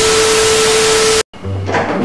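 TV-static glitch transition sound effect: a loud hiss of static with a steady beep tone through it, cutting off suddenly after about a second. Background music follows.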